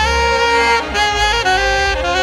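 Saxophone playing a melody live, moving from note to note with a short break about a second in, over a deep bass accompaniment.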